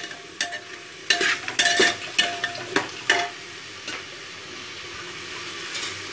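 A perforated ladle scraping and knocking around the inside of an open pressure cooker as mutton and onions are stirred and fried in it, each knock giving a short metallic ring. The stirring stops about three seconds in, leaving a steady sizzle.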